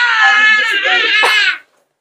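Toddler crying: one long, high-pitched wail that stops about a second and a half in.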